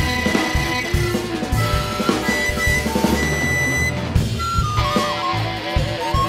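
Jazz-rock band playing: a recorder carries the melody in long held notes that break into quicker stepping phrases about halfway through, over drum kit, upright bass and electric guitar.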